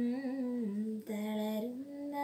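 A young woman singing a slow melody solo, unaccompanied, holding long low notes that step downward, with a brief break for breath about a second in and a step up in pitch near the end.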